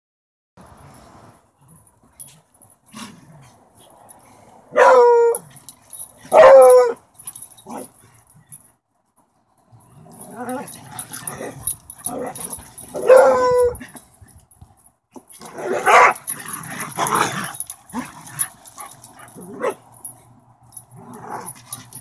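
Two dogs, one a beagle, play-fighting: three loud barks about five, six and a half and thirteen seconds in, with growling and scuffling between them.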